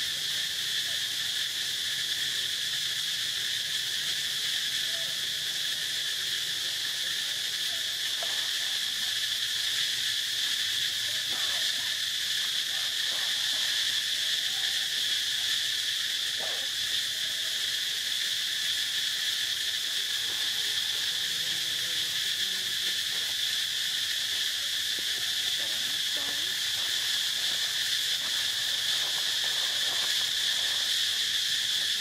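A steady, high-pitched insect chorus, droning without a break.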